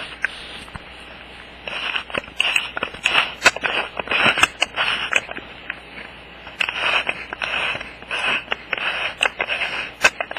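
Handling noise from a handheld camera being adjusted: crackly rubbing and scraping with scattered sharp clicks, in two spells of a few seconds each.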